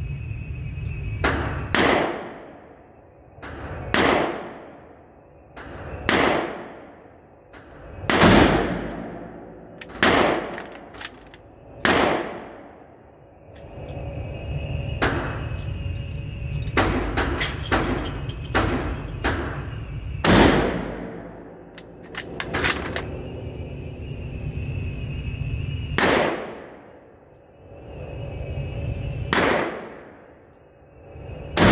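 Repeated gunshots ringing on in the echo of an indoor range: a Kar98k bolt-action rifle in 8mm Mauser firing among shots from other lanes, with a quick string of shots a little past the middle. A steady low hum lies underneath.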